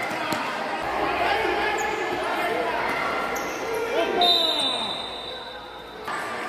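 Futsal ball being kicked and bouncing on a hard indoor court, with voices calling out and echoing in the hall. A steady high whistle sounds for about two seconds near the end.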